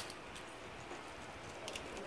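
Faint light clicks of plastic ballpoint pens being handled and touching one another, one about a third of a second in and a pair near the end, over a low steady hiss.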